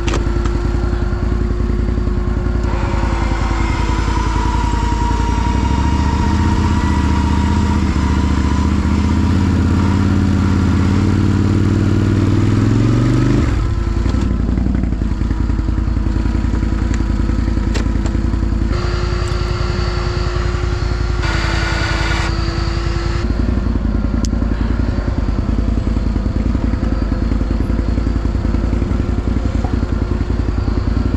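Can-Am ATV's Rotax V-twin engine running, heard from the rider's seat. The revs climb slowly for about ten seconds and drop off abruptly about 13 seconds in, then the engine settles back to a steady low-speed run.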